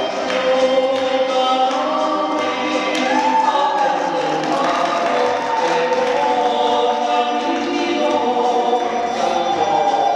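Choral music: a choir singing long held notes that move slowly from chord to chord.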